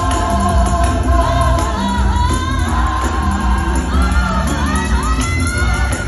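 Gospel choir singing live over a band with a strong, steady bass, the sung lines gliding up and down.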